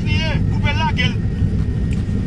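A brief stretch of a voice in the first second, over a steady low background rumble.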